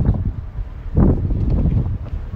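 Wind buffeting the microphone: an irregular low rumble, with a louder gust about a second in.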